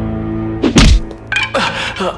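Film background music holding a sustained drone, with one heavy thud of a blow landing about three quarters of a second in, then a short falling sound.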